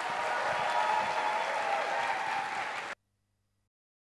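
Audience applauding, swelling at first and then steady, cut off abruptly about three seconds in.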